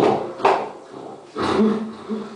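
A man's wordless, animal-like vocal noises into a microphone, in two short bursts about a second apart.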